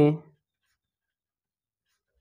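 The end of a spoken word, then near silence.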